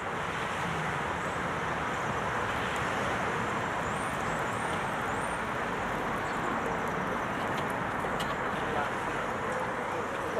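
Steady outdoor city background noise, a continuous even rush like distant traffic, with a few faint high chirps about four to five seconds in.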